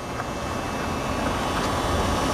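Steady vehicle rumble with a faint tone, slowly growing louder.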